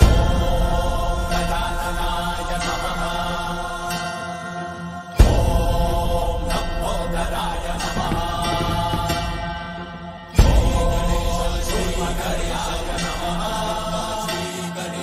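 Hindu devotional aarti music with chanting for Lord Ganesh, over sustained drone-like tones. A deep loud strike or swell comes three times, about five seconds apart, each fading away.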